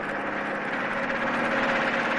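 Bus engine running steadily with an even hum.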